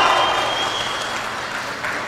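Audience applauding, the clapping loudest at the start and slowly dying away.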